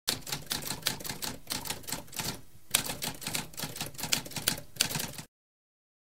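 Typewriter keys clacking in a rapid, uneven run of strikes, with a brief pause about halfway through, stopping abruptly about five seconds in.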